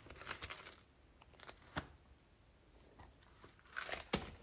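Faint rustling and a few soft taps of paper as a wire-bound notebook is handled, opened out and laid flat on a table.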